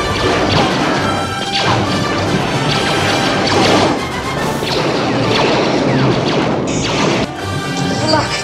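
Film sound effects of a blaster shootout: repeated blaster shots and bursting impacts against metal walls, over orchestral score.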